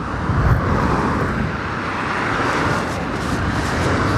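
A car passing close by on the road, its tyre and engine noise swelling to a peak around the middle and fading toward the end.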